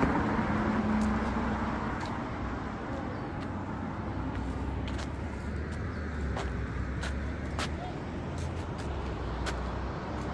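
Low, steady rumble of work-truck engines and road traffic. A humming engine drone fades out after about two seconds, and a few light clicks come later on.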